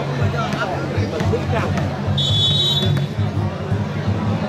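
Crowd chatter and speaking voices, with one short, high referee's whistle blast a little over two seconds in, the signal for the volleyball serve.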